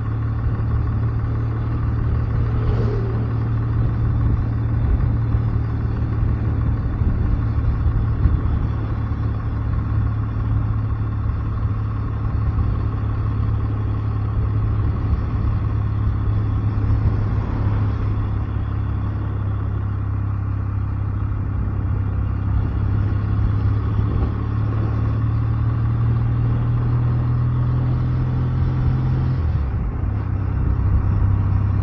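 Kawasaki W650 air-cooled parallel-twin motorcycle engine running steadily at road speed, with the engine note dropping near the end as the revs fall.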